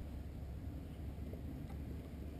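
Faint, steady low rumble of wind buffeting the microphone, with no distinct events.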